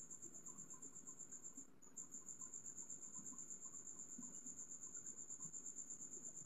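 A cricket trilling faintly: a steady, high-pitched pulsing trill with a brief break about two seconds in.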